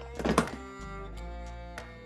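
Homemade fretless suitcase bass, a suitcase body with a NordicTrack ski for a neck: a thunk on the instrument about a third of a second in, then a low note ringing on.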